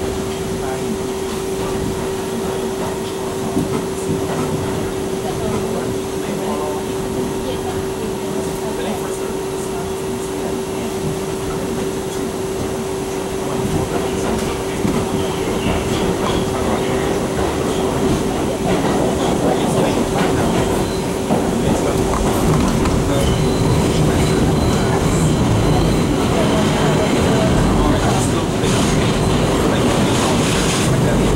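Inside a 1985 R62A subway car pulling out of a station: a steady hum over rail running noise and wheel clatter. The running noise grows louder from about halfway through as the train picks up speed into the tunnel.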